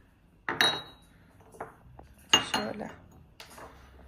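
A porcelain cup and saucer clinking together as they are handled: a sharp clink with a brief ring about half a second in, and a second clink a little past the middle.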